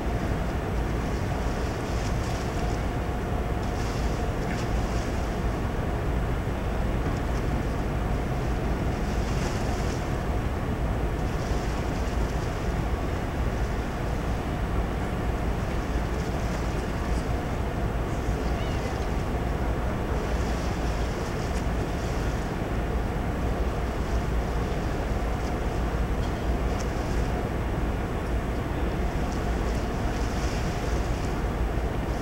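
Steady wind rumble on the microphone over a constant ship's machinery hum with a faint steady tone, on an open deck. Patches of higher hiss come and go every few seconds.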